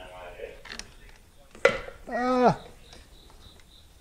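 Camera being handled, with a sharp click about a second and a half in, followed by a short wordless voice sound like a grunt.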